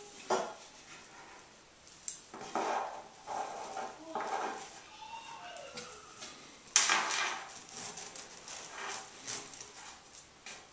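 Fabric strips rustling and swishing as they are folded and pulled through onto a taut string, in irregular bursts of handling noise. A sharper, louder burst comes about seven seconds in.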